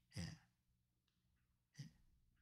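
Near silence broken by a man's faint breathing: a short breath just after the start and a quick intake of breath near the end.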